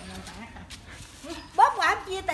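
A woman's voice: faint at first, then a loud, high call with rising pitch in the last half second.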